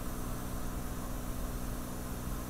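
Steady cabin drone of a Cirrus SR20 in flight: the piston engine and propeller running at an even, constant power, with a hiss of airflow over it.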